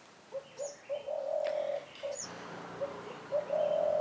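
A dove cooing: a phrase of a few short coos running into a longer held coo, given twice, with a couple of brief high chirps from a smaller bird.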